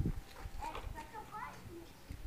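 Faint voice sounds, short rising and falling syllables without clear words, after a low rumble that fades at the very start.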